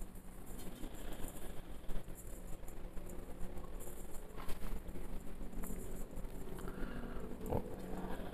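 Dry spice rub shaken from a small pot, pattering faintly onto chicken wing pieces in a stainless steel bowl, with a couple of light taps.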